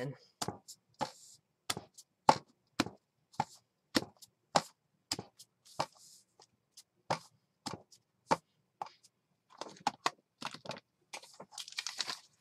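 Rubber stamp on a clear mounting block being inked on an ink pad and pressed again and again onto paper: a string of short, sharp taps, about two a second, with brief paper rustling in between.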